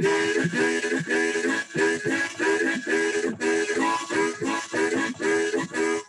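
Harmonica played between verses of a boogie song: a rhythmic riff of repeated chords, about two to three a second.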